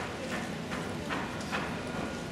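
Footsteps of hard-soled shoes on stone paving, a regular stride of about two and a half steps a second.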